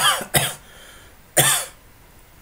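A man coughing three times into his hand: two quick coughs, then a third about a second later.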